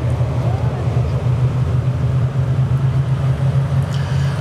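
Speedway saloon car engines running with a steady low drone that neither rises nor falls in pitch.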